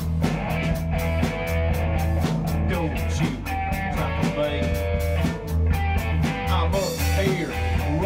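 Rock band playing an instrumental passage between sung lines: an electric guitar lead with gliding notes over bass and a steady drum beat.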